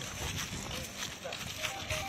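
Indistinct voices of a group of people talking at once over steady outdoor background noise, with no clear words.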